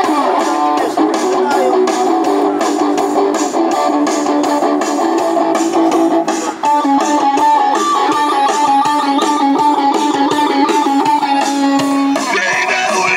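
Amplified electric guitar strummed in a steady rhythm of about four strokes a second, an instrumental passage with no singing. The chord pattern changes about two-thirds of the way through.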